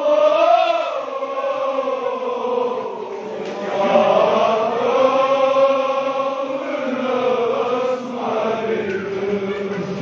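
Male voices chanting a noha, a Shia mourning lament, in long, drawn-out, wavering held notes, amplified through a microphone.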